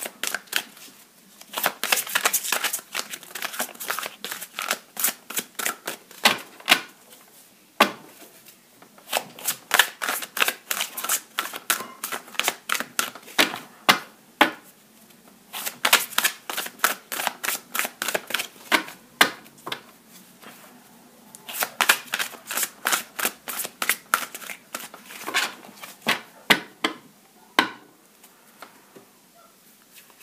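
A tarot deck with gilded edges being shuffled by hand: rapid runs of crisp card flicks and slaps, in several bursts broken by short pauses.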